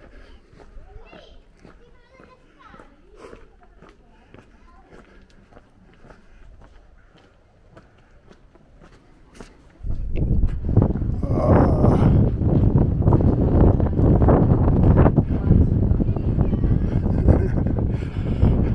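Wind buffeting the camera microphone, starting suddenly about halfway through and staying really loud. Before it, faint distant voices.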